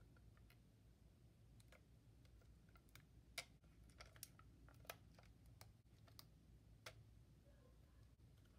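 Near silence broken by a handful of faint, sharp clicks in the second half, from fingers peeling protective stickers off the plastic buttons of a MakeID Q1 label printer.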